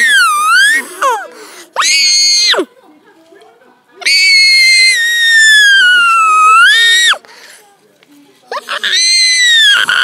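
A young girl's high-pitched squeals, four in a row: the longest lasts about three seconds, dipping in pitch and rising again at the end.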